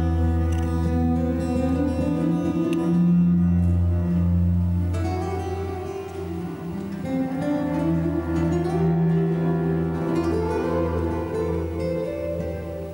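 Live music from an electric bass and an acoustic guitar, the bass holding long low notes under the guitar.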